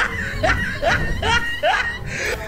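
Snickering laughter: a run of short rising squeaky notes, about two or three a second.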